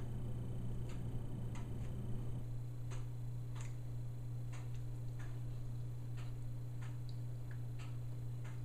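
A clock ticking steadily, light ticks a little under a second apart, over a steady low hum.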